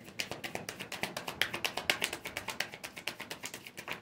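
A rapid, even series of light taps or clicks, about nine a second.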